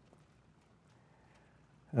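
Very quiet room with a few faint soft clicks and rustles of Bible pages being turned at a lectern. Near the end a man's long 'Oh' begins, falling in pitch.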